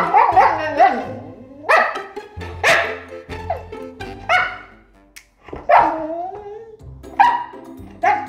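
Siberian husky 'talking': a run of about seven short, expressive woo-ing calls, each bending up and down in pitch, with brief pauses between them.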